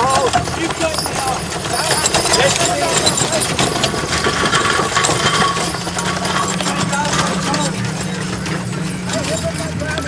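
Horse-drawn chuckwagons moving past on grass, with horses' hooves and the rattle of the wagons under the voices of people around them. A low steady hum comes in about halfway through.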